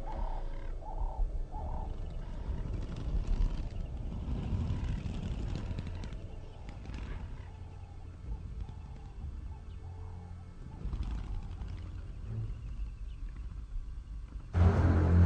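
An animal calling in short repeated cries about half a second apart, over a low rumbling noise.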